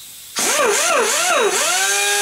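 Pneumatic angle grinder with a small grinding disc, run free off the compressor air line: starting about half a second in, its whine rises and falls several times as the throttle is feathered, then holds steady at speed, with a hiss of air over it.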